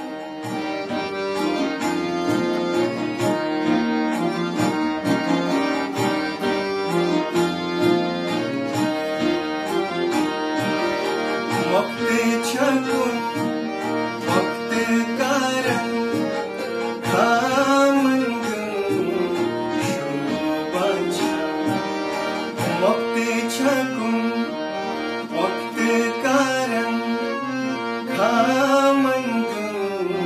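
Harmonium playing held chords and melody, joined about twelve seconds in by a man singing a Kashmiri song in long phrases that rise and fall.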